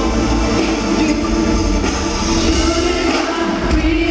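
Live R&B band playing, with electric guitars and bass under a male lead vocal. The bass drops away about three seconds in.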